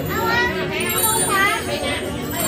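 Young children's high-pitched voices, talking and calling out.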